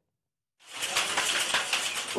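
Saree handloom clattering in rapid, dense strokes as the weaver works it. It starts abruptly after a moment of silence.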